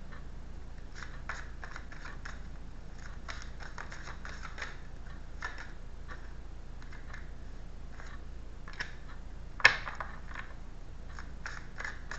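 A deck of tarot cards being shuffled by hand, with a run of light irregular clicks and riffles as the cards slide and flick against each other, and one sharper snap of the cards about ten seconds in.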